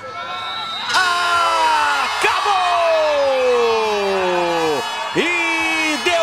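A man's voice holding one long drawn-out shout that falls steadily in pitch for about four seconds, then a shorter call near the end, over a cheering crowd.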